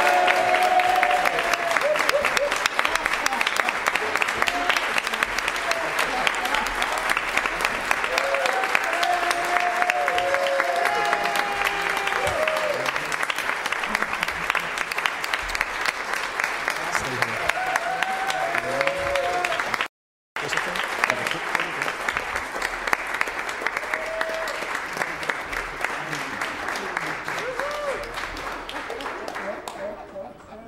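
Congregation applauding continuously. The sound drops out for a split second about two-thirds through, and the clapping fades near the end.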